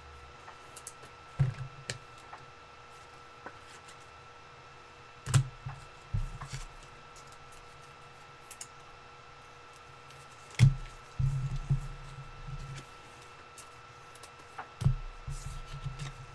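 Trading card packs and boxes handled on a table: scattered soft knocks and handling noises, a few seconds apart, with a cluster of them about two-thirds of the way through. A faint steady high hum of two pitches runs underneath.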